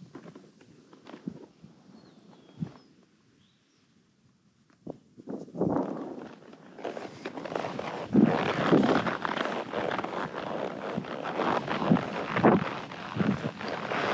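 Horse being ridden over grass: soft hoofbeats and tack at first, then about five seconds in a loud rush of wind on the microphone with irregular heavy hoof thuds as the horse picks up speed.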